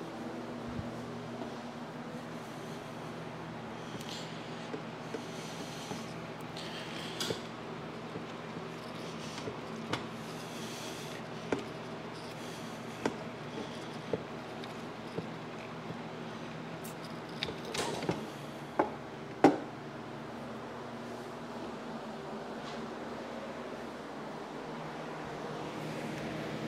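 Electric box fan running steadily with an even rush of air and a faint motor hum. Scattered short clicks and knocks sound over it, the loudest about three-quarters of the way through.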